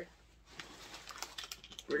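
Faint clicks and crinkles of plastic and foil packaging being handled, starting about half a second in.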